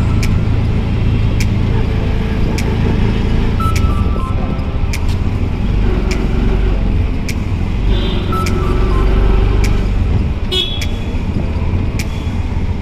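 City road traffic heard from a moving vehicle: a steady low engine and road rumble, with short car horn honks about four seconds in, near eight seconds, and again near the end.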